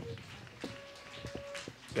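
Quiet pause in which a wooden flute sounds one soft, steady note for about a second, with a few faint clicks around it.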